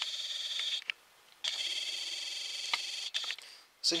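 A camera's zoom motor whines as the lens zooms out. It runs in two stretches, a short one and then, after a brief pause, a longer one, with a few faint clicks.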